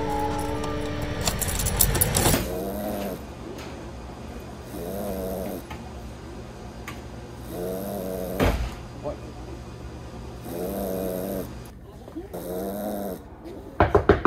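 A man snoring: five drawn-out snores, one about every two and a half seconds, after music fades out in the first two seconds. A single sharp click comes about eight and a half seconds in.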